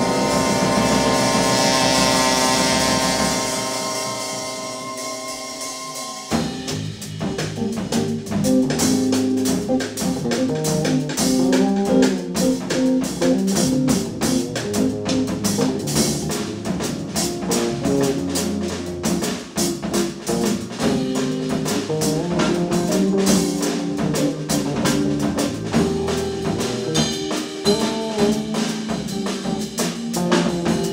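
Live jazz ensemble of vibraphone, drum kit, electric bass and horns playing experimental jazz. For about the first six seconds the band holds long sustained notes; then the drums and bass come in with a busy rhythm under moving lines.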